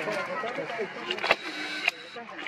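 People's voices talking in the background, with two sharp clicks, one just past the middle and one near the end.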